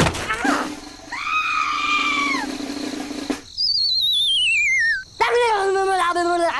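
Cartoon sound effects for animated figurines: a knock at the start, then a high squeaky cartoon voice over a steady hum. About halfway through comes a wobbling whistle that falls steadily in pitch for over a second, followed by more squeaky chattering.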